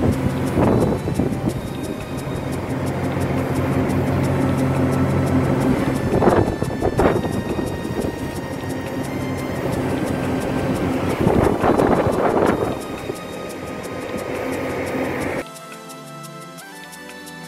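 Wind and rushing water noise from a boat under way on the open ocean, with a steady low hum underneath and louder swells of rushing a few times, over quiet background music.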